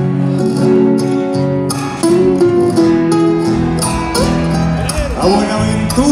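A live folk band playing the instrumental lead-in to a song on guitars, with long held notes and a wavering voice-like line near the end, just before the first sung verse.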